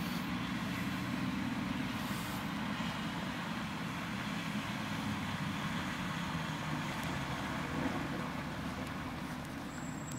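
Steady low rumble of a motor vehicle engine running, with traffic noise.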